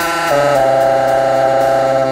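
Baritone saxophone playing two long held notes, stepping to the second about a third of a second in, with no drums under it.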